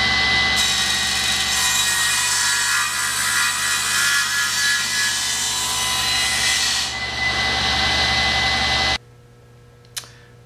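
Table saw running with a steady whine, its blade cutting through a thick glued-up wooden block from about half a second in until about 7 seconds in. The saw then runs free and stops abruptly about a second before the end.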